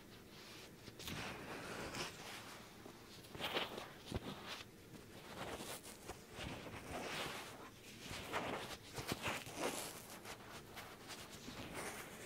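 A wet wipe rubbed over the ear of a binaural microphone: close, irregular rustling and swishing strokes, repeated many times.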